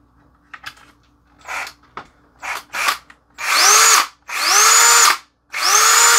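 Ridgid cordless drill motor spinning up: a few short trigger blips, then three longer runs of about a second each, the pitch rising and then holding steady. The repaired battery pack, its corroded board cleaned, is now powering the drill.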